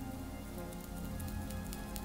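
Faint scratchy brushing of a makeup brush sweeping over the cheek, over quiet background music.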